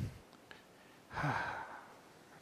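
A man's weary sigh, one breathy exhale about a second in: exasperation at a disturbance outside the room.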